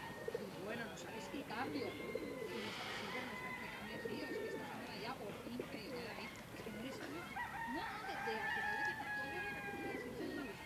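A flock of feral pigeons cooing, their overlapping calls running on throughout. Other birds call over them, including a long drawn-out call about seven seconds in.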